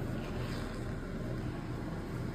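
Steady low hum and hiss of background noise, with no distinct knife or cutting sounds.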